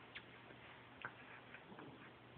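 Near silence broken by three faint short ticks as two puppies mouth and paw at a toy on a blanket.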